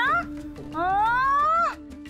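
Background drama score with a steady low drone. About a second in, a long voice-like glide rises in pitch and then breaks off.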